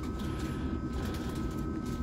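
Steady low hum and rumble inside a double-deck passenger train standing at a platform, with two faint steady high-pitched tones above it from the train's running equipment.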